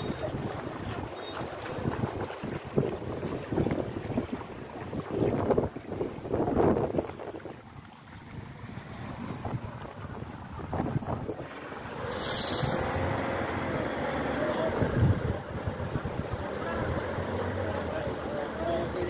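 Floodwater rushing in a steady noisy torrent, with people's voices calling over it at times. About twelve seconds in there is a brief high falling whistle.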